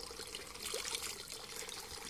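Water running steadily from a pipe spout into a trough.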